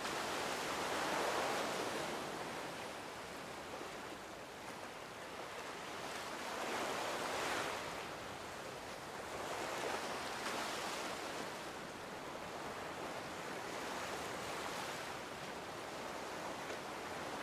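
Ocean surf washing onto a rocky shore, the noise swelling and falling back in slow waves every few seconds.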